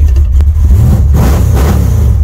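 The Dodge Dart's small-block V8 with a single-plane intake running, heard from inside the cabin, as the car pulls away; the revs rise about halfway through.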